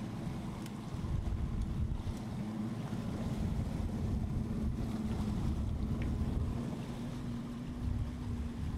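Boat motor running steadily at trolling speed, a constant hum, with wind buffeting the microphone and the wash of choppy water.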